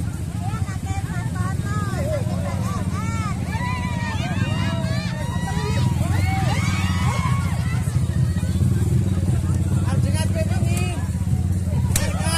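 A motorcycle engine idling close by, a steady low rumble, under the chatter and calls of a crowd.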